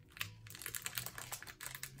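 Plastic wrapper of a chocolate-coated caramel and biscuit bar being torn open and crinkled by hand: a quick, uneven run of crackles and clicks.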